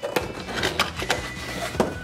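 A blade slitting the tape along the seam of a cardboard toy box, a scratchy scraping broken by several sharp clicks and snaps as the cardboard gives.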